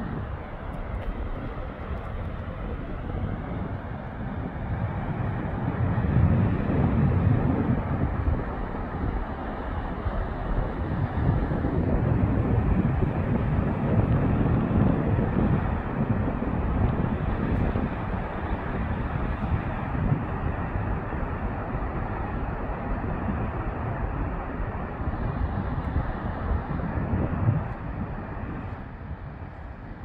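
Steady rushing roar of a fast, muddy river running through whitewater rapids, swelling louder at times.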